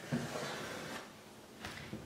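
A soft scratching rub for about a second, then quieter: a pencil tracing around a wagon wheel held flat against a white panel.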